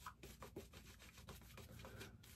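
Shaving brush working lather onto a face: faint, quick swishing strokes of the bristles against the lathered skin.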